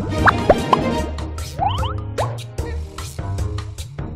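Slot-game background music with a beat, over which cartoon bubble-pop sound effects play as short rising bloops: three in quick succession in the first second and a few more around two seconds in, as symbols burst and the reels refill.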